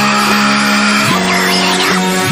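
Deathcore song played backwards at double speed: held low, heavy chords that shift pitch about a second in and again near the end, with high gliding sounds of a reversed, sped-up voice curving above them.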